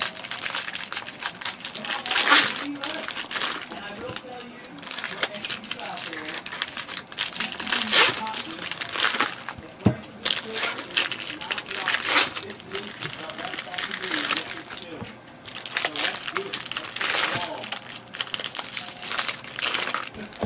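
Trading card pack wrappers crinkling and crackling as packs are handled and opened, with louder surges every few seconds.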